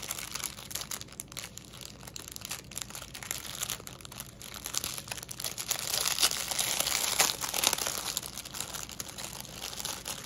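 Crinkling of a clear plastic bag holding strips of diamond-painting drill packets as it is handled and pulled open. It is louder for a couple of seconds about six seconds in.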